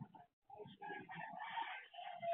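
A rooster crowing, one drawn-out call starting about half a second in, heard thinly through a security camera's microphone.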